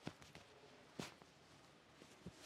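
Near silence, with faint fabric rustling and two soft brief knocks about a second apart, as a quilted pullover jacket is pulled off over the head.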